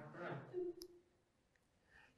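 A man's voice fading out at the end of a phrase, a single faint click just under a second in, then near silence: a pause in a spoken lecture.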